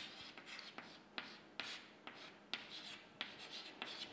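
Chalk writing on a chalkboard: faint, irregular scratches and taps as each stroke of a word is drawn.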